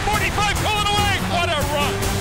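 A play-by-play announcer's excited, high-pitched shouted call of a long run, over steady background music.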